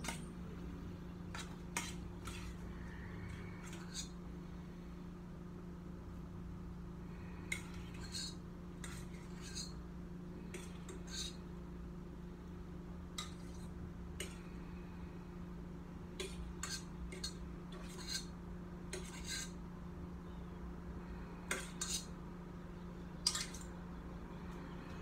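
A utensil clinking and scraping against a metal saucepan as pasta is stirred and mixed, in irregular clinks about every second over a steady low hum.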